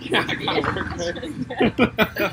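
Speech only: several people's voices, unclear and overlapping, with two loud voiced bursts near the end.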